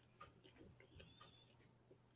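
Near silence: quiet room tone with a low hum and a few faint, scattered clicks.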